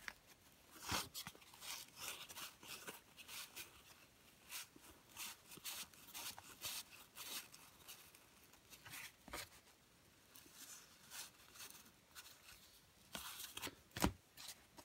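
Baseball cards being leafed through by hand, one after another: faint, irregular rustles and soft clicks of card stock sliding over card stock, a little busier near the end.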